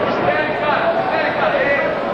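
Indistinct men's voices shouting over steady arena crowd noise.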